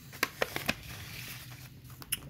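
Paper mailer envelope rustling as a trading card in a plastic holder is pulled out, with three short sharp clicks in the first second.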